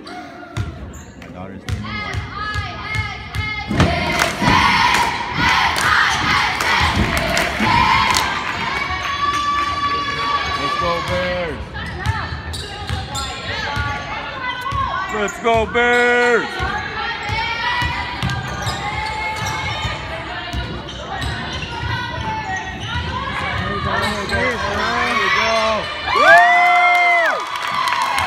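Basketball being dribbled and bouncing on a gym floor, short thuds throughout, under the shouts and cheers of spectators, with one loud shout near the end.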